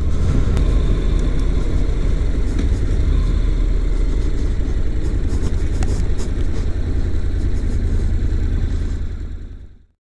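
Honda NC700X motorcycle's parallel-twin engine running at low speed, with a steady low rumble of engine and road noise. It fades out over the last second.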